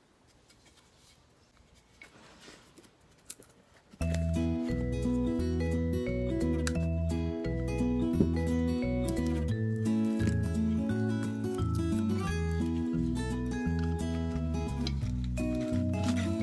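Near silence for about four seconds, then background music starts suddenly, with a steady rhythmic bass line under held notes.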